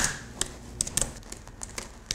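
Irregular light clicks and taps of hands working at a laptop on a desk, opening with one sharp knock.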